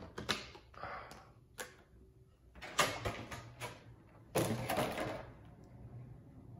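Trading cards and a plastic card sleeve being handled: a few short clicks in the first two seconds, a cluster of quick scuffs about three seconds in, then the loudest stretch of rustling for about a second near the end.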